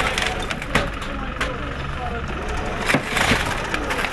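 Several sharp clicks and knocks, scattered irregularly over a steady low background rumble, with faint distant voices.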